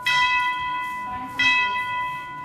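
Two bell-like chime strikes about a second and a half apart, each ringing on with a steady, slowly fading tone.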